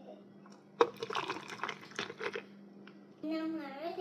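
A sharp clink about a second in, then the herbal drink being poured from a ceramic bowl through a metal mesh strainer onto ice in a glass, splashing and crackling. Near the end a person hums 'mm-hmm'.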